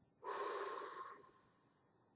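A woman's single long exhale, about a second, fading out at the end.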